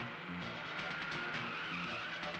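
Car tyres squealing as a sedan swings hard round a corner, with a drawn-out squeal in the second half, over background film music with a beat.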